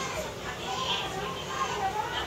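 Indistinct children's voices chattering and playing in the background.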